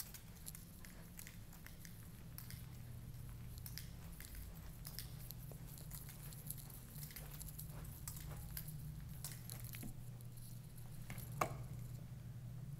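Faint room sound while the camera is carried through the rooms: small scattered clicks and rustles of handling and steps over a steady low hum, with one sharper click near the end.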